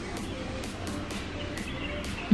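Birds chirping faintly over a steady background hiss.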